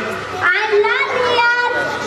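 A young girl's voice performing over a microphone and PA, with drawn-out held notes.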